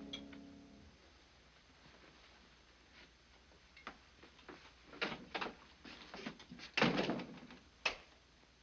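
Scattered knocks and bumps of a scuffle or movement in a room, building to one heavy thud about seven seconds in and a sharp click just before the end.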